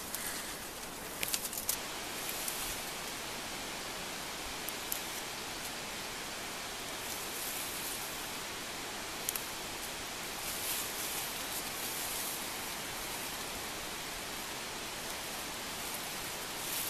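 Leaves and stems rustling in short flurries as nettles are picked by hand in thick undergrowth, over a steady outdoor hiss.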